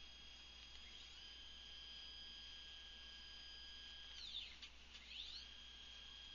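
Faint, steady high whine of CNC axis motors jogging, step-pulsed at about 60,000 steps per second. About four seconds in, the pitch glides down and back up as the axis slows and speeds up again, then holds steady.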